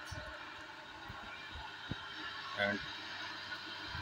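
Three-phase induction motor, started through a soft starter, running with a steady hum made of several even tones.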